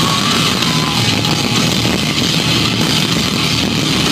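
Live gothic rock band playing loud through a club PA, with electric guitar and a dense, steady wall of sound.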